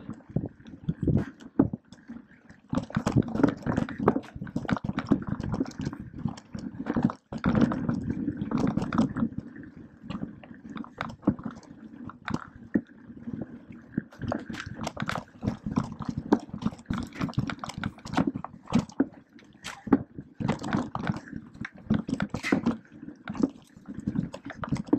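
Mountain bike riding over rough forest singletrack: the tyres running on dirt, roots and rocks, with a dense, irregular rattling and knocking from the bike as it is shaken over the bumps.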